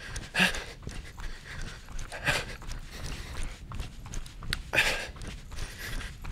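A man jogging and breathing heavily, three loud breaths about two seconds apart, over the steady beat of his running footsteps.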